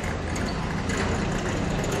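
Street traffic noise: a steady low engine hum, as of a vehicle idling, over the general noise of a town street.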